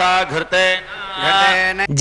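A Vaishnava priest's voice chanting a Sanskrit hymn to Krishna through a microphone, a sing-song recitation on long held notes broken by short pauses.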